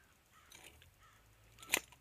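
Low background with faint handling sounds, then one sharp click near the end as the dog-proof raccoon trap (coon cuff) holding the raccoon's paw is handled.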